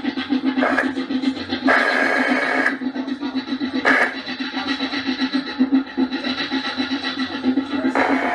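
Live noise music from handheld electronics: a steady, fluttering low drone, cut by three bursts of harsh hiss about one, two and four seconds in. The middle burst lasts about a second.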